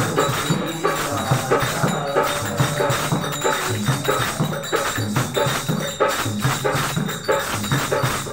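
Devotional song accompaniment: a steady rhythm of hand percussion, jingling strokes with drum beats, several strokes a second.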